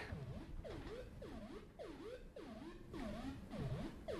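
Modular synthesizer voice playing a fast sequence from an Intellijel Metropolis step sequencer: faint short notes, about three a second, each gliding in pitch. The sequencer is set past eight stages, so the pattern runs through all eight steps and then four more before starting over.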